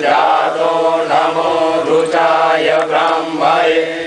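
Voices chanting Hindu mantras in a continuous recitation, the phrases rising and falling over a steady held low note.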